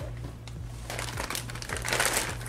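Clear plastic bag crinkling as hands work it off a ring light, the crackling getting busier about a second in.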